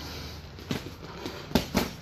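Boxing gloves landing punches in sparring: one lighter thud, then two quick, sharp smacks in a row about a second and a half in.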